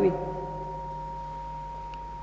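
Steady high-pitched electronic tone from the microphone and sound system, with a fainter lower tone that fades out about one and a half seconds in, over a low hum.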